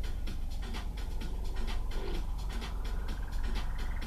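Wind buffeting the microphone in irregular gusts over a heavy low rumble. From about two and a half seconds in, a faint whistle rises slowly in pitch.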